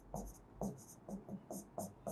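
Pen stylus writing on the glass of an interactive touchscreen board: a series of about six short, faint strokes as letters are written.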